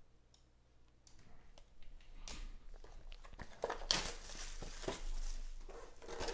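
Trading-card box packaging being handled and opened: cardboard and plastic rustling and scraping with a few light clicks. It starts faintly about two seconds in and is loudest in the second half.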